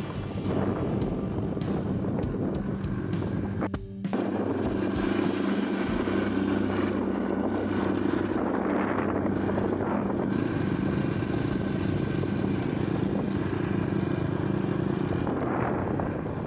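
Motorbike engine running steadily with road and wind noise while riding, with music mixed in. Just before four seconds in, the sound drops out briefly, and then the engine hum carries on at a slightly different pitch.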